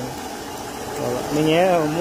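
A man's voice, a long gliding phrase about halfway in, over the steady hum of a milking machine's vacuum pump.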